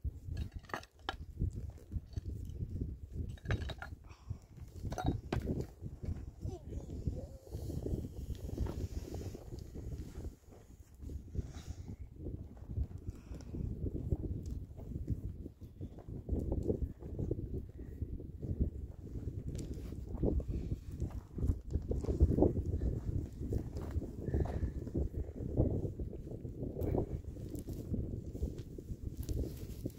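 A pick-mattock striking stony soil several times in the first few seconds, then hands scraping and scooping loose dry earth, over a continuous low rumble.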